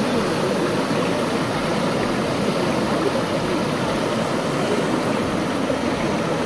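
Shallow mountain stream running over rocks: a steady rush of water heard close to the surface.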